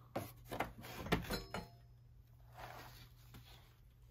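A few light knocks and clicks, bunched in the first second and a half, from a metal-framed picture being gripped and tilted by hand.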